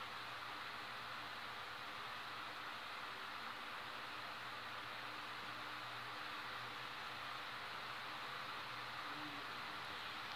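Steady faint hiss with a low hum underneath: room tone, with nothing else happening.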